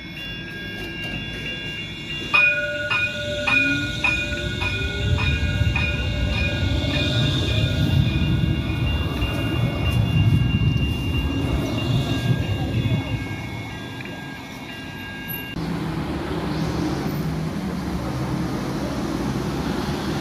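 A VLT light-rail tram passing close by, its electric drive whine slowly rising in pitch as it moves, with a series of ringing clicks about two a second for several seconds early on. Near the end the sound cuts abruptly to a lower, noisier rumble of street and rail traffic.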